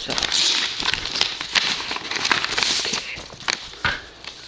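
Yellow padded mailer being torn open by hand: crackly paper tearing and crinkling with sharp snaps, stopping near the end.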